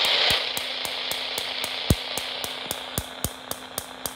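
Radio receiver giving off static: a burst of hiss that fades within half a second, then a steady low hum with regular sharp ticks about four a second and a few louder clicks.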